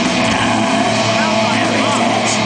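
Live extreme metal band playing at full volume: heavily distorted electric guitars and drums in a dense, unbroken wall of sound, with a shouted voice over it.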